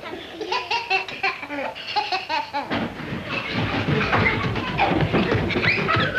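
Young children laughing and calling out in short, high, rising and falling sounds. About halfway through it turns into a louder, denser din of shrieks and laughter with clattering knocks.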